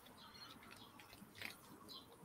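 Near silence with faint crinkling and rustling of a comic book, its plastic bag and art prints being handled by hand, a little louder about one and a half seconds in.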